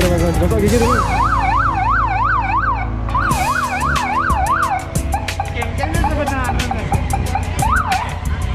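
Electronic siren in a fast yelp, about three up-and-down sweeps a second, sounded in two bursts of about two seconds with a short break between them, then a single whoop near the end.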